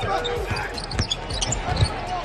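A basketball dribbled on a hardwood court during live play, with short high shoe squeaks and a sharp knock about a second in.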